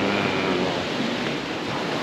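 Steady wash of small sea waves breaking on a rocky shoreline, mixed with wind blowing across the microphone.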